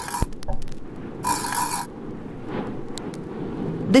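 Title-sequence sound effects: a quick run of mechanical clicks, then a hissing burst of noise about half a second long, over a low rumbling drone.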